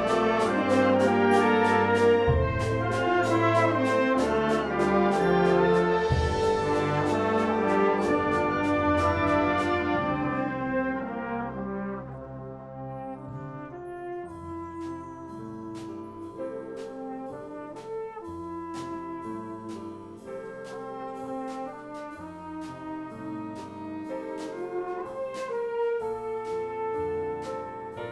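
Concert wind band playing: loud full-band music with brass prominent and regular percussion strokes keeping a steady beat, dropping about a dozen seconds in to a quieter passage of held brass chords as the beat carries on.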